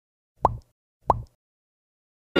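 A short, bright pop sound effect, heard twice about two-thirds of a second apart. Each pop is an identical quick upward-sweeping blip, typical of an editing sound effect.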